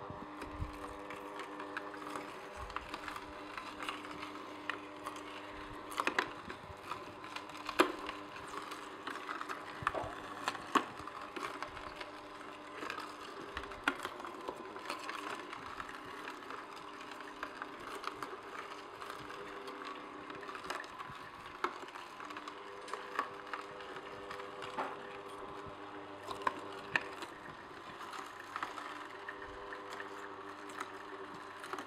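Omega Juice Cube 300S horizontal slow juicer running with a steady hum while its auger crushes beet strips, with frequent irregular cracks and snaps as the pieces break up. The pulp regulator is set to maximum back pressure.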